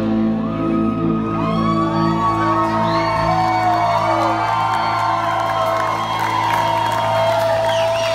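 Live Southern rock band in a sustained, drumless passage: a low chord held under long ringing notes, with high notes bending and gliding up and down over it.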